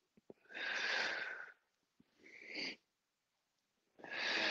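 A man breathing hard while exercising, heard close on the microphone: a long breath about half a second in, then a shorter one a little past the middle.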